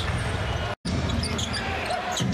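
Basketball game arena sound: crowd noise with a ball dribbling on the hardwood court. It drops out for an instant just under a second in, at an edit.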